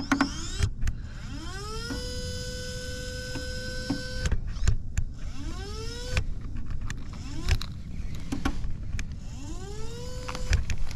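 Powerhobby winch motor on an RC crawler winding in line in several pulls, each a small electric whine that rises in pitch and then holds steady. The longest pull runs about three seconds. Clicks and knocks fall between the pulls, over a low rumble of wind on the microphone.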